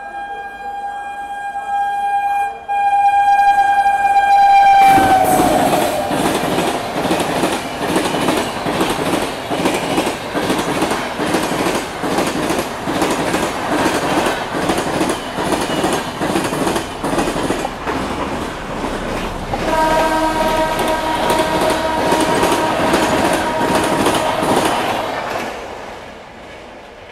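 An express train hauled by an electric locomotive runs through the station. The locomotive holds one long horn as it approaches, and the horn's pitch drops as it passes about five seconds in. The coaches then rumble past with a steady clickety-clack of wheels over rail joints, and another long horn sounds about twenty seconds in.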